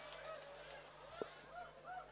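The tail of audience laughter fading out, a few scattered faint laughs from the crowd, with one short sharp knock about a second in.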